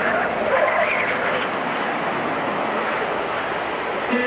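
A steady rushing, wind-like noise, with a wavering voice-like sound over it for the first second and a half; no instruments play until the very end.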